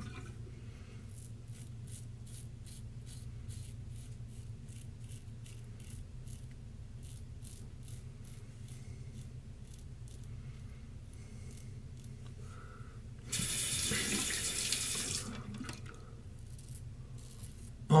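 Double-edge safety razor scraping through lathered stubble on the neck in a run of short, irregular strokes. Near the end a faucet runs for about two seconds.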